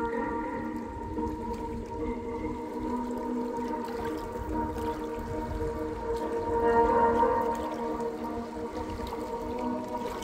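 Small lake waves lapping and splashing against shoreline rocks, under slow ambient music of long held chords that swells about seven seconds in.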